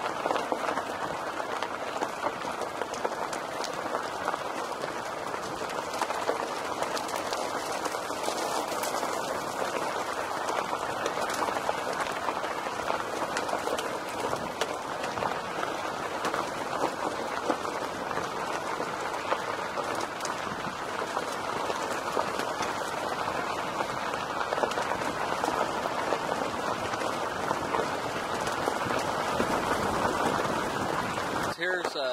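Car tyres rolling over a loose gravel road: a steady, dense crunching crackle of stones under the tyres, with scattered sharp ticks of pebbles.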